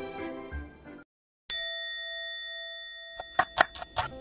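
A single bright bell-like ding rings out about a second and a half in and dies away over nearly two seconds, after the background music fades out. Near the end, quick knife chops on a wooden cutting board begin as a knife slices green onion.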